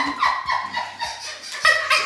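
Soft laughter and low voices from a few people at a table, fading after a brief falling sound at the start, with a few light clicks.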